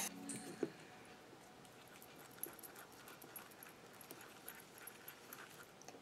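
Quiet room with faint, scattered small clicks and taps: hands handling craft supplies and a thin wooden stick at a plastic tub of homemade texture paste.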